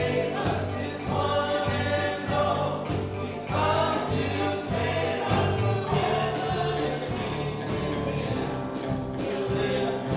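A group of voices singing a Christian worship song with instrumental accompaniment, sustained low accompaniment notes under the melody.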